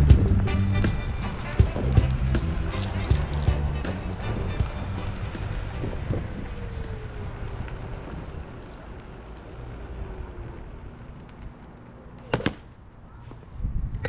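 Background music with a steady beat, fading out over the first half, followed by a single sharp knock near the end.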